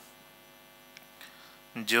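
Faint steady electrical hum from the microphone and sound system in a pause, with two small soft clicks. A man's chanting voice comes back in strongly near the end.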